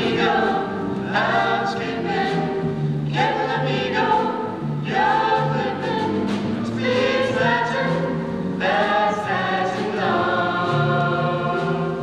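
A small vocal ensemble singing together in harmony, several voices at once, in phrases of a second or two.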